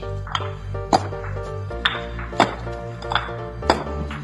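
Background music with a steady bass line, over concrete paving blocks knocking sharply against each other as they are set down one after another, about six knocks at uneven intervals.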